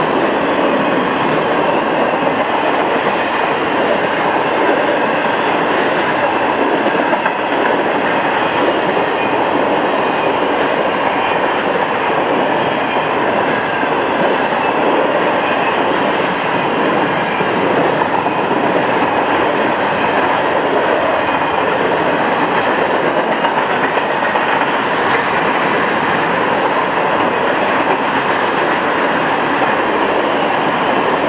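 Florida East Coast Railway intermodal freight cars loaded with truck trailers rolling past close by: a steady, loud noise of steel wheels on rail.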